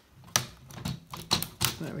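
Irregular light clicks and knocks of hard 3D-printed plastic parts as the camera tower's walls are worked down onto the platform's brackets, a tight fit; about six or seven knocks in two seconds.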